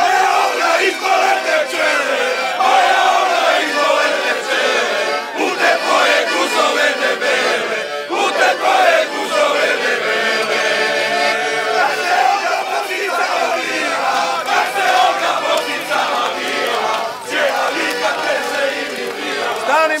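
A crowd of men cheering and chanting together, many voices at once, with fists raised in celebration.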